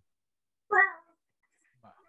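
Speech only: a single short spoken word ("what") a little under a second in, with near silence around it.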